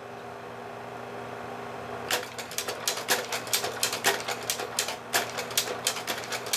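Kodak Carousel slide projector with a stack loader fitted, running with a steady fan hum; from about two seconds in, a fast, irregular run of mechanical clicks starts and keeps going.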